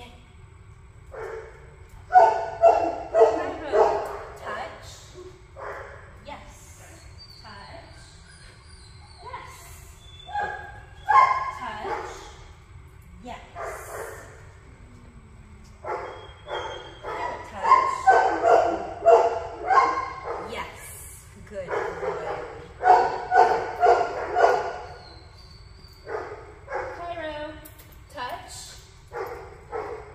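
A dog barking in several bursts of quick, repeated barks, with pauses between the bursts.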